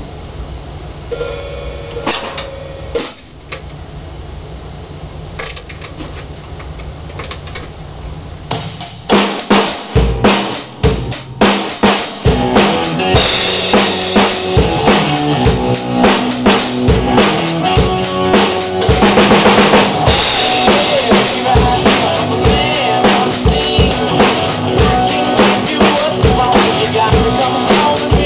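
A low steady hum with a few scattered knocks, then about nine seconds in a Gretsch drum kit comes in with a few loud separate hits. From about twelve seconds a steady rock beat of bass drum, snare and cymbals is played over a recorded song, with heavy cymbal wash in places.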